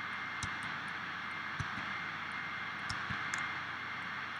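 Steady background hiss with several faint, short computer mouse and keyboard clicks scattered through it.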